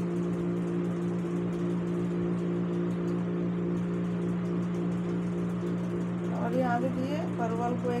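A steady low mechanical hum made of several held tones, over a faint hiss. A woman's voice comes in near the end.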